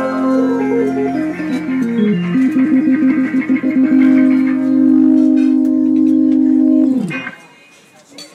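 Live acoustic guitar band ending a country gospel song: a descending run of notes, a fast trill, then one long held final note that stops suddenly about seven seconds in.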